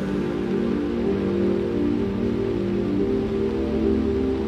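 Beatless ambient electronic music: sustained, overlapping low synth pad chords with a soft hiss underneath and no drums.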